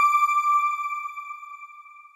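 A single bell-like chime from a logo sting, struck just before and ringing out at one clear pitch, fading steadily until it is almost gone at the end.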